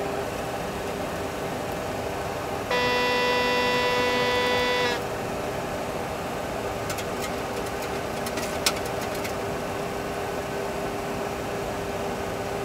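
A steady electronic alert tone in a Boeing 737 Classic simulator cockpit, held for about two seconds starting about three seconds in, over the steady hum of the simulator. A few faint clicks follow later as mode control panel knobs are turned.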